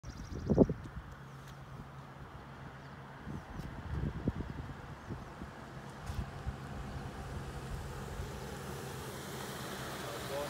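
Wind buffeting the microphone, with a strong gust about half a second in and more around four seconds, over the steady low hum of an SUV approaching slowly on a paved road, getting slightly louder toward the end.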